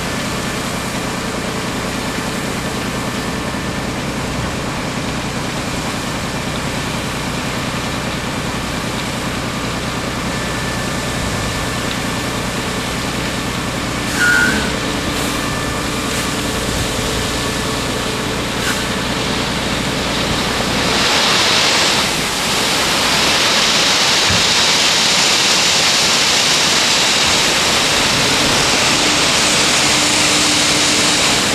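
DAF XF truck engine running steadily while the tipper semi-trailer's body is raised hydraulically. About two-thirds of the way through, the low engine drone drops away and a loud, steady rushing takes over, the sound of the gravel load sliding out of the raised tipper body.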